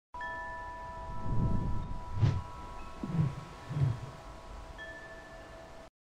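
Intro sound for an animated logo: shimmering chime tones ringing steadily, with four soft low swells. The loudest swell is a short hit about two seconds in. All of it cuts off just before the end.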